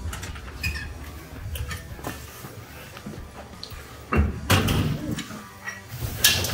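Hotel room door and phone-handling noise: faint rustles and ticks, then a cluster of louder knocks and scrapes a little after four seconds in.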